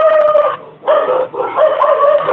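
An animal's long, drawn-out calls, steady in pitch: one breaks off about half a second in, then a short call and a longer one follow.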